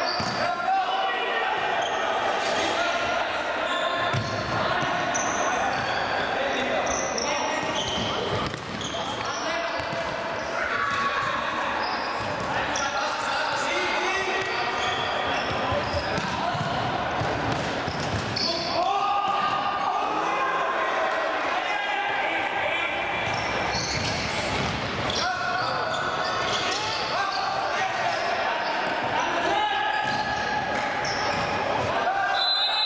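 Players shouting to each other across a reverberant sports hall during futsal play, with the ball being kicked and bouncing on the hard indoor court.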